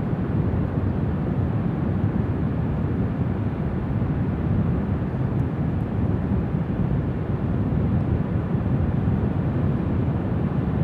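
Steady low rumbling noise of wind buffeting the microphone, with no distinct events.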